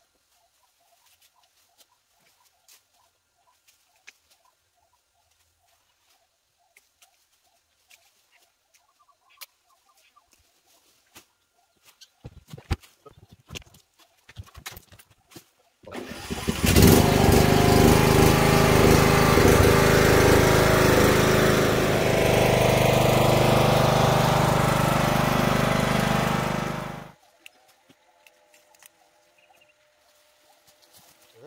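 Ride-on lawn mower's engine comes in suddenly about halfway through and runs loud and steady for about ten seconds, then cuts off. Before it there are only faint clicks and light ticking.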